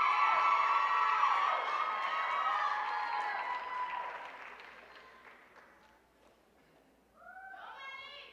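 Audience cheering and whooping, many voices at once, loudest at first and dying away over about five seconds. A few voices cheer again briefly near the end.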